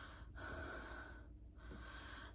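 A woman's faint breathing during a pause in her speech: three breaths, the middle one the longest.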